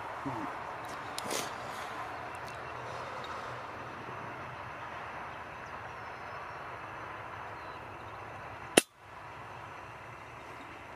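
A single rifle shot near the end, sharp and much louder than the steady outdoor hiss before it. The level dips briefly right after the report.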